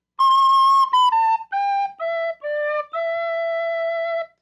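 Soprano recorder playing a seven-note phrase: a long high C, then B, A, G, E and D stepping down, rising to a held E at the end.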